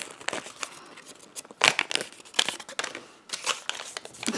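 Sheet of origami paper crinkling as fingers fold and crease it: a string of small, crisp crackles, with a louder crackle a little under two seconds in.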